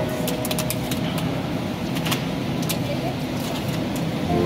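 Supermarket background noise: a murmur of shoppers' voices and a low hum, with scattered sharp clicks and crinkles of plastic fruit packs being handled.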